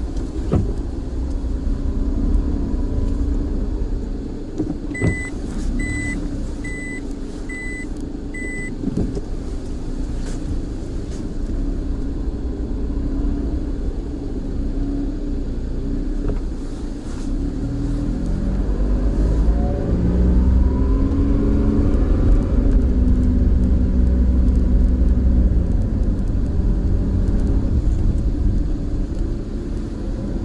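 Car engine and road noise heard from inside the cabin as the car drives. About five seconds in come five short, evenly spaced high beeps. From about 17 s the engine revs up as the car climbs a ramp, and it runs loudest near the end.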